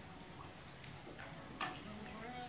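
A hushed room with faint background murmur and one sharp click about one and a half seconds in.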